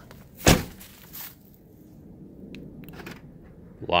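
A car door on a BMW E46 shut once with a solid thump about half a second in, followed by a smaller knock and a few faint clicks.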